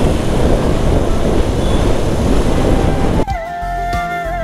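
Wind rushing over the microphone of a moving motorcycle, an even loud rush with road noise. About three seconds in it cuts off abruptly and background music begins.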